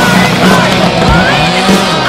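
A rally car's engine revving and dropping as the car slides through a loose gravel corner, with rock music mixed over it.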